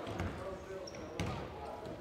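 A basketball being dribbled on a hardwood gym floor: two bounces about a second apart.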